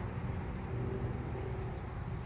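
A steady low outdoor rumble with no speech, with a faint high chirp about a second in.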